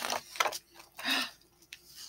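Paper rustling as a large picture-book page is turned by hand, in three short bursts.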